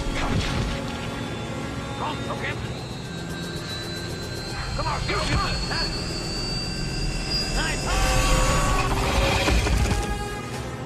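Action film soundtrack: orchestral music over a propeller aircraft's running engines, with grunts and scattered blows from a fistfight. The low engine rumble swells louder near the end.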